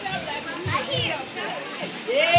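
Indistinct chatter of several voices talking over one another, with a brief high-pitched voice about a second in.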